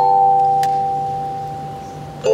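Concert wind band's chord of several steady notes fading away over the two seconds, with a single mallet-percussion stroke ringing out a little over half a second in.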